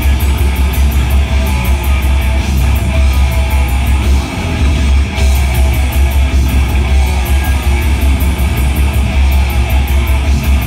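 Heavy metal band playing live and loud: distorted electric guitars, bass and fast drumming with rapid cymbal hits, with a brief drop in level about four seconds in.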